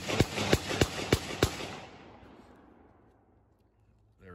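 A rapid string of about six pistol shots from a Glock, roughly three a second, each a sharp crack. The echo trails off over about a second and a half after the last shot.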